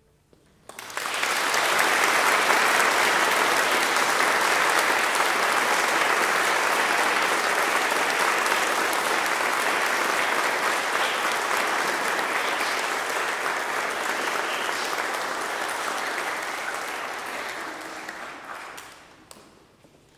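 Audience applause: it starts about a second in after a brief hush, holds steady, then fades out near the end.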